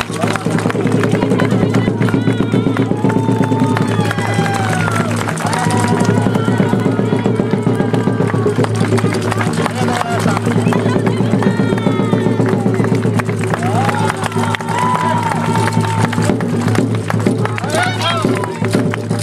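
Japanese folk-style dance music: a singer's voice bending and wavering in pitch over steady sustained accompaniment and continuous drumming.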